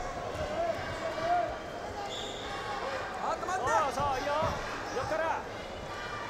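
Wrestlers' feet thudding and scuffing on the mat, with voices shouting in the arena: a run of short rising-and-falling calls about halfway through.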